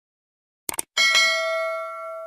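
Subscribe-button sound effect: a quick cluster of mouse clicks, then about a second in a notification bell struck twice in quick succession, ringing on and slowly fading.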